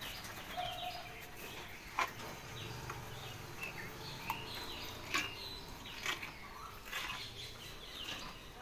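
Small birds chirping on and off, with a few sharp clicks or knocks, the clearest about two, four and five seconds in.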